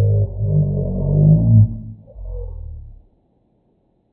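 A man's voice slowed far down, a deep, drawn-out vocal sound with a wavering pitch that stops about three seconds in.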